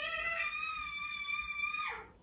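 A cat's single long, drawn-out meow that slides down in pitch as it ends.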